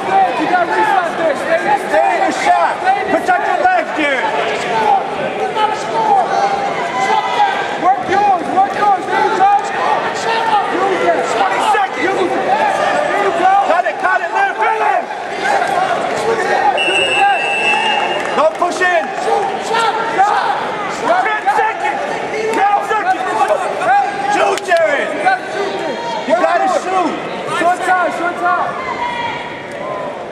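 Many overlapping, indistinct voices of a crowd of coaches and spectators in an arena, shouting and talking continuously. A short, high whistle sounds briefly about seventeen seconds in.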